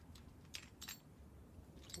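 A few faint, light clicks of metal harness hardware being handled as the old bridge is taken off the harness: two about half a second to a second in, another near the end.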